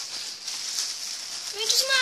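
A steady hiss, then about one and a half seconds in a child's high-pitched voice making a humming 'mmm' that glides down in pitch.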